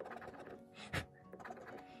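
A round scratcher disc scraping the coating off a scratch-off lottery ticket in short strokes, with one sharp scrape about a second in, over soft background music.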